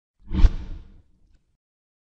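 A single whoosh sound effect with a deep low thud at its peak. It swells quickly and dies away within about a second.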